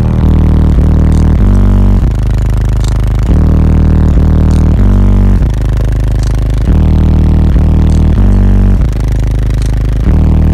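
Bass-heavy rap track played very loud inside the vehicle's cabin through two FI Audio BTL 15-inch subwoofers in a sixth-order wall, driven by an Audio Legion AL3500.1D amplifier. Long, heavy bass notes change pitch every second or so.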